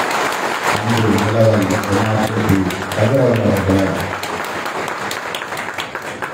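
Audience applause in a hall: many hands clapping, with voices rising over it twice in the first four seconds. The clapping thins out and grows quieter over the last two seconds.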